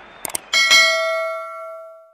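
Sound effect of a quick double mouse-click followed by a bright bell ding. The ding has several clear tones and rings out, fading over about a second and a half.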